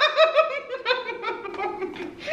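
A woman laughing: a high-pitched run of quick giggling pulses that tails off near the end.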